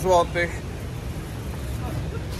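Street traffic noise: a steady low rumble of passing road vehicles, following a last spoken word at the start.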